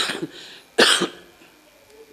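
A man coughing twice into his fist, two short harsh coughs a little under a second apart.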